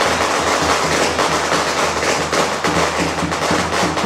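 Traditional Taiwanese temple percussion, drums and clashing cymbals, playing loudly in a dense, continuous pattern with no melody.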